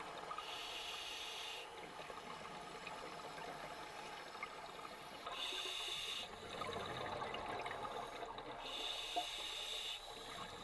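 Scuba diver breathing through a regulator underwater: three hissing breaths about four seconds apart, with bubbling and crackle between them.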